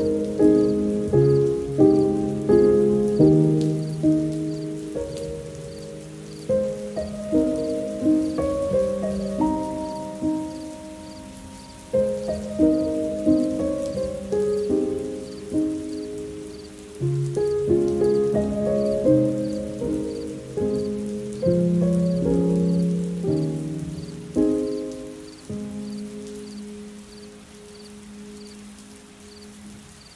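Soft, slow solo piano playing gentle chords and melody over a faint rain-like patter, the whole gradually fading until the last notes die away near the end.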